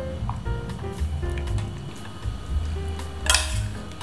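Background music with a bass line, and about three seconds in a brief metallic clatter of kitchenware: a utensil against a steel pot or container.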